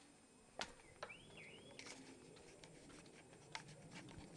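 Near silence: quiet outdoor background with three faint clicks, and a faint brief wavering whistle about a second in.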